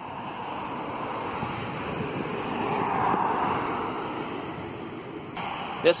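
Road and tyre noise of a passing car: a steady rush that swells to a peak about halfway through and fades again.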